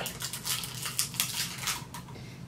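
Plastic biscuit packet crinkling as a Tim Tam is pulled out of it by hand, a quick irregular run of small crackles.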